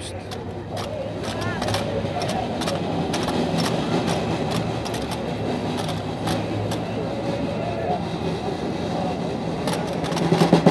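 Outdoor crowd murmur over a steady low rumble, with scattered short clicks and knocks.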